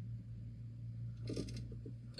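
Quiet car-cabin room tone: a steady low hum, with a faint murmured voice briefly about a second and a half in.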